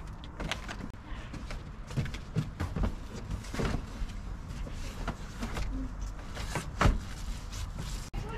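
Irregular knocks, bumps and rustling as a padded window storage bag is pushed into place against a campervan's rear side window, with a person stepping and shifting about on the van's load floor. The sharpest knock comes about seven seconds in.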